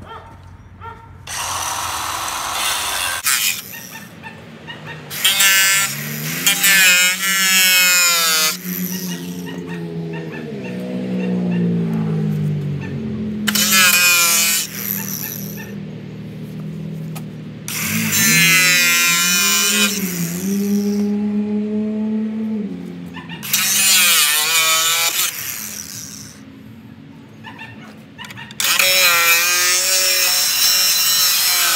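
DeWalt angle grinder with a cutoff wheel cutting through the sheet-metal headlight support, in about six separate cuts of a few seconds each. Between cuts the motor's whine drops and climbs again as the wheel spins down and back up.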